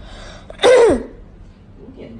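A single short, loud vocal sound about half a second in, falling steeply in pitch over under half a second, over low background noise.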